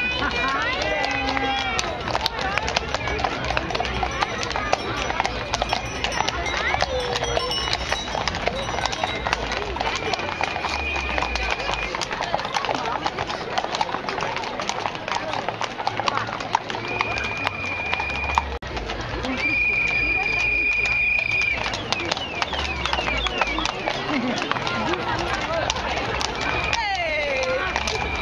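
Hooves of many horses walking on a paved street, a dense, overlapping clip-clop. From about ten seconds in, a steady high tone sounds three times, each lasting a second or two.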